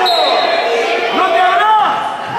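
Players' indoor court shoes squeaking on a wooden futsal floor in a run of short, arching squeals, with voices calling out across the hall.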